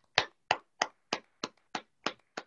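One person clapping steadily, about three claps a second.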